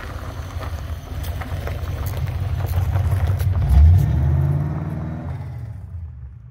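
A 1977 Chevrolet Camaro Z28's V8 engine running and revving as the car pulls away. It grows louder to a peak about four seconds in, rises in pitch as it accelerates, then fades toward the end.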